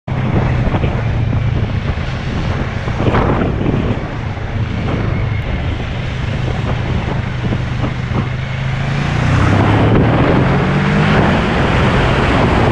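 Kawasaki ER-6n's 649 cc parallel-twin engine running at a steady note, then rising in pitch as the bike accelerates about nine seconds in. Wind noise on the microphone throughout.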